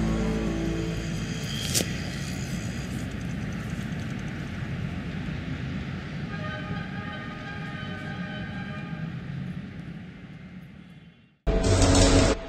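Steady outdoor city noise heard from a rooftop, slowly fading out, with a faint held horn-like tone for a few seconds in the middle. Loud outro music cuts in just before the end.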